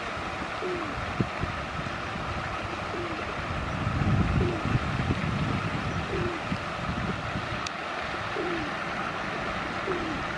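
Outdoor background: a steady hiss with a low rumble that swells in the middle, as from wind on the microphone. Short, low, falling calls sound every second or two, a bird's coo.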